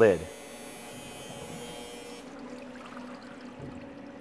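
Orbital X photopolymer water-wash processor running its washout cycle: a steady electric hum with a faint low tone. A hiss over it cuts off about two seconds in.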